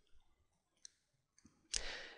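Near silence with a couple of faint computer clicks, then a short breath-like hiss near the end.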